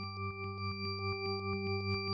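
Electronic music intro: a synthesized drone of steady held tones, softly pulsing about four times a second and swelling louder as it fades in.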